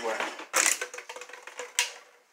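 A man's word trailing off, then a short rustle about half a second in and a single sharp click near the end.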